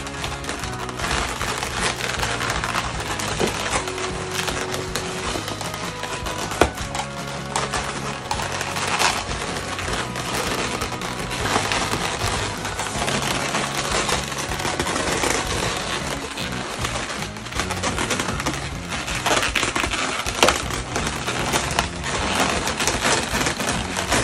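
Latex twisting balloons (chrome 260Q) rubbing and squeaking against each other as they are handled and tied, with an occasional sharp click, over background music.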